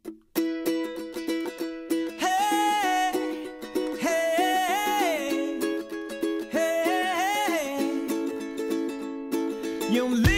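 Background music: a new song begins just after a brief pause, with plucked strings and a melody line that slides up and down.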